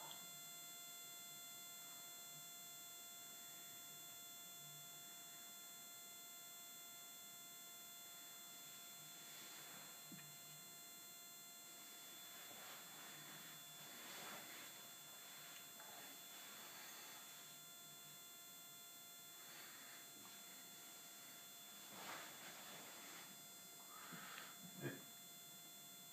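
Near silence: room tone with a faint steady electrical hum made of several thin tones, and a few soft, faint rustles.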